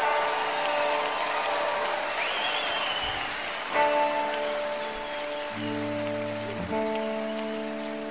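Audience applause with a brief whistle, and from about four seconds in the band holding steady sustained chords on electric guitars, changing chord twice.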